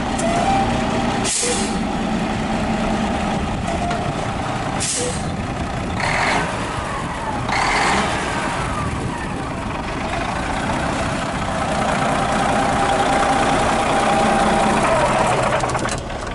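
Semi tractor's diesel engine, apparently a Caterpillar, idling steadily, with short sharp air hisses every few seconds.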